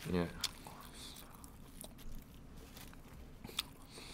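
Faint chewing of food, with a few small clicks scattered through it; a mouthful of Korean rolled omelette (gyeran-mari) is being eaten.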